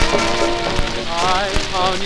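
Dance-band music played from a cracked 78 rpm shellac record: held band chords, then a melody with wide vibrato coming in about a second in. All of it sits under heavy surface crackle, with a click about every three-quarters of a second, once per turn of the disc, from the crack.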